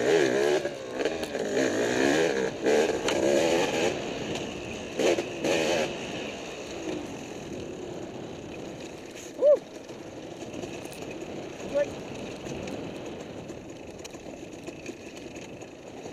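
Dirt bike engine revving up and down with a wavering pitch over the first several seconds, with a few sharp knocks. It then runs quieter and steadier, with two short throttle blips.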